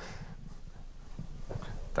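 Quiet room tone of a lecture hall with a low steady hum, and a faint voice off the microphone near the end.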